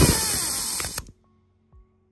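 An Astro Pneumatic air rivnut gun runs loudly, its pitch falling as it draws a nutsert tight in a steel bar. It cuts off abruptly about a second in, stalling because the insert is tight.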